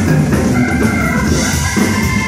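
Live rock band playing: Hammond organ chords held over drums and electric guitar.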